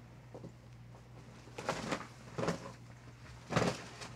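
A few soft knocks and rustles of small objects being handled and set down, over a faint steady low hum.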